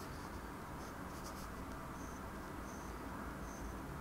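Faint scratching of a glass dip pen's nib drawing lines on paper, over low room hum.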